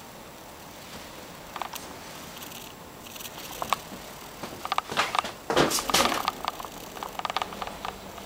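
Irregular clicks, knocks and crackles of a person moving about, handling the camera and flashlight, over a faint room hiss, densest and loudest about five to six seconds in.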